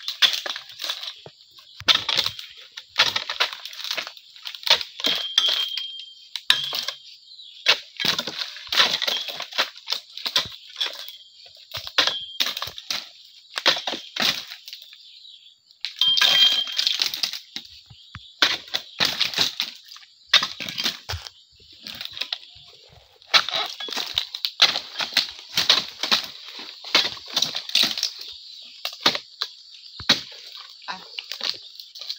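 Oil palm pruning chisel (dodos) on a long pole hacking at the frond bases of an oil palm trunk: repeated sharp chops and cracks, often in quick runs, with short pauses between.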